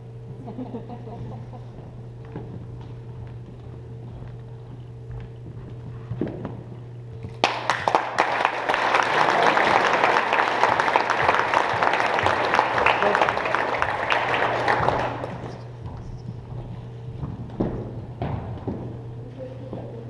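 Audience applauding: a burst of clapping starts suddenly about seven and a half seconds in, holds for about seven seconds, then dies away.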